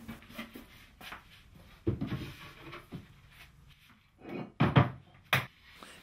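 Plywood being handled on a workbench: a few scattered wooden knocks and thumps, the loudest ones near the end, over quiet room tone.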